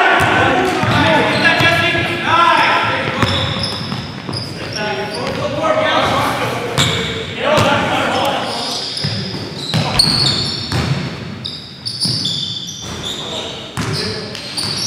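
A basketball bouncing on a gym's hardwood floor, with players shouting and short high sneaker squeaks on the court, all echoing in a large gymnasium.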